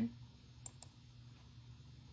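Two quick computer-mouse clicks, close together, about two-thirds of a second in, over a faint steady low hum.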